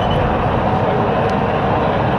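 Leyland Titan PD2 double-decker bus's diesel engine running while the bus drives along, heard from on board as a steady mix of engine and road noise.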